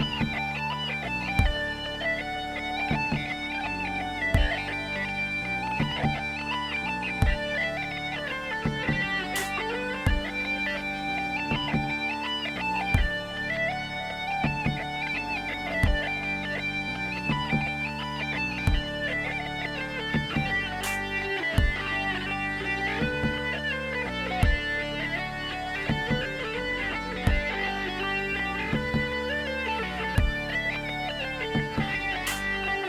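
Distorted mandolin playing a fast Irish reel melody over a sustained drone, with a low thump about every second and a half keeping the beat.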